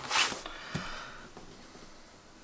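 Clear acrylic quilting ruler slid over a paper-backed fabric strip on a cutting mat: a short swish, then a soft tap as it is set down, fading to quiet.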